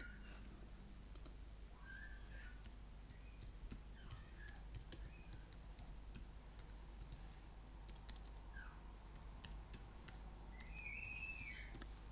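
Faint computer keyboard typing, irregular keystroke clicks, with a girl's voice sounding faintly in the background a few times, most clearly near the end.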